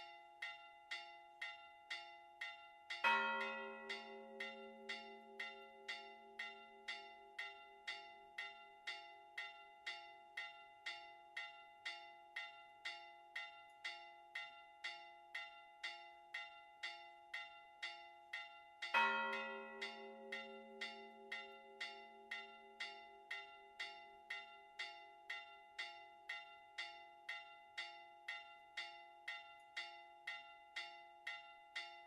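Four church bells ringing a festive Maltese 'mota' peal. A small high bell strikes evenly at about two strokes a second over the steady ring of the others. A deep bell strikes twice, about three seconds in and again some sixteen seconds later, each time the loudest stroke, its low hum fading slowly over several seconds.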